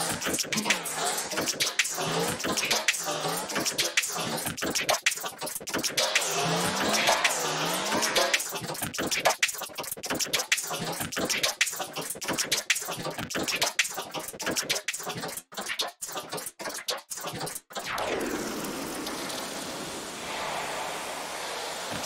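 Garbled, alien-like vocal fragments made from a looped voice sample run through the Polyverse Comet reverb plugin, its reverb size, decay and pre-delay modulated in rhythm by an envelope follower driven by a drum groove, so the sound stutters and warbles in rapid chops. About 18 seconds in the chopping stops and a smooth, washy reverb tail carries on.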